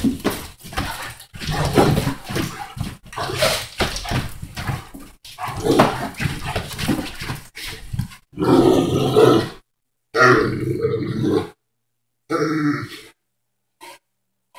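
A Great Dane grunting and grumbling in protest at being told off the couch while thrashing about on the cushions. In the second half come three longer drawn-out groans with silent gaps between them.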